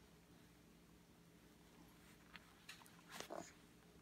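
Near silence: room tone with a baby's faint mouth noises while eating puff snacks, a few small clicks and a brief soft sound about three seconds in.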